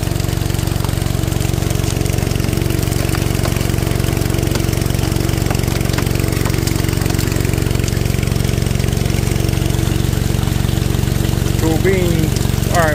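Small gasoline engine of a suction gold dredge running steadily at constant speed, driving the dredge's water pump.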